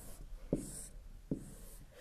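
Whiteboard marker drawing on a whiteboard: a few short, quiet strokes of the felt tip across the board, with a couple of light taps.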